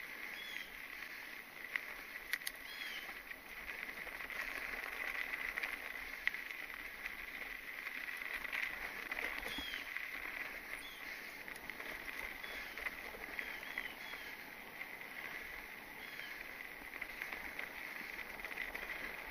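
Mountain bike rolling over a dry dirt trail: tyre noise with small clicks and rattles over a steady high-pitched hiss. A few short bird chirps come and go.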